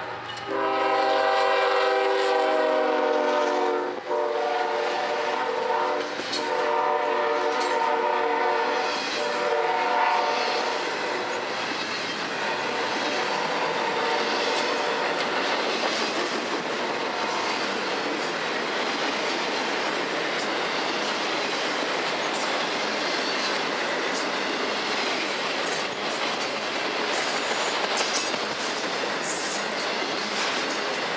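Diesel freight locomotive's air horn sounding in long blasts through roughly the first ten seconds, with a brief break about four seconds in, as it passes. Then the train's cars roll by with steady rumble and rhythmic wheel clatter over the rail joints.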